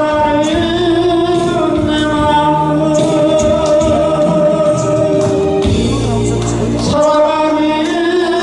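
A man singing a slow melody into a microphone, his held notes wavering with vibrato, over amplified instrumental accompaniment with a low bass line.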